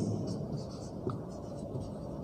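Marker pen writing on a whiteboard: a series of short, faint strokes as letters are drawn.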